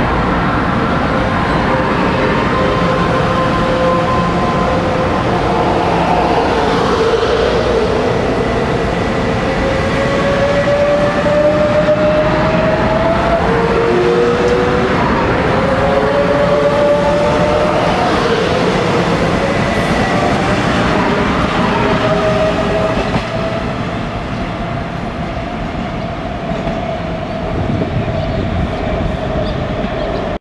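Taiwan Railway EMU500 electric multiple unit pulling out past the platform, running noise with a traction whine that glides upward in pitch as it gathers speed. The sound eases off in the last few seconds as the train moves away.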